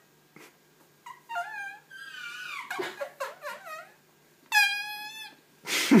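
Dry-erase marker squeaking on a whiteboard while writing: a run of short high squeaks that slide and waver in pitch, then one longer steady squeak near the end. Laughter breaks in at the very end.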